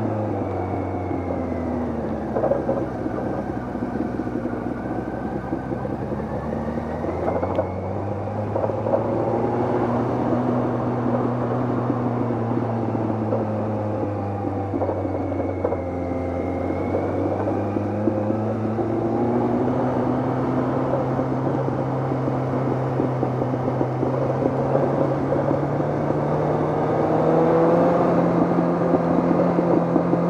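Motorcycle engine running under way, heard from the bike itself. The note drops about two seconds in, then rises and falls with the throttle and climbs steadily over the last few seconds.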